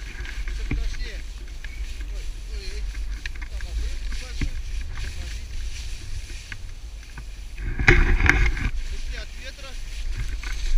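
Snowboard sliding through powder snow, with wind rumbling on the helmet-pole camera microphone; a louder rush of board and snow noise comes about eight seconds in.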